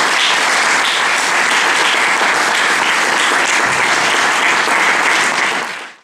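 Audience applauding, a steady dense clapping that fades out quickly near the end.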